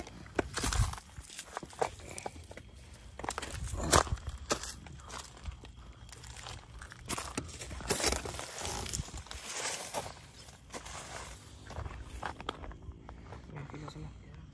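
Footsteps climbing over rock, dry grass and fallen leaves, with irregular crunches and scrapes. The loudest step comes about four seconds in, with another strong one around eight seconds.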